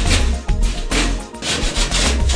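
Hand plasterboard saw cutting through a plasterboard ceiling in a few rasping strokes, over background music with a steady bass.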